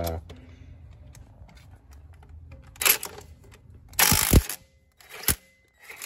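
A few short rustles and knocks of handling noise as the camera is moved, the loudest about four seconds in, with a single click a second later, over a faint low hum.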